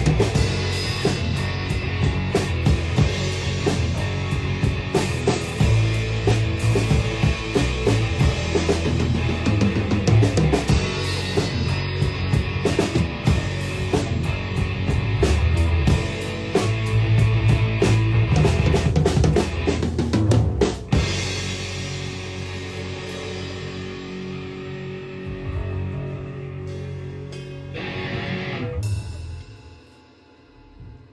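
Rock band jamming live: a drum kit with bass drum and snare, plus electric guitar and bass, heard close to the drums. About two-thirds of the way through the drumming stops and the guitar and bass notes ring on and fade, swelling briefly before the jam ends at the very end.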